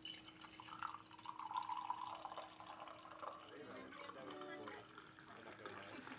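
Faint, distant talk of people in a room, with small clicks and knocks, over a steady hum that stops about three and a half seconds in.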